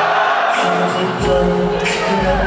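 Live concert music with a man singing into a handheld microphone through the venue's sound system; a deep bass note comes in just over a second in.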